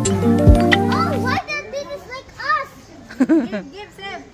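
Music with held notes that cuts off abruptly about a second and a half in, followed by young children's voices chattering and exclaiming.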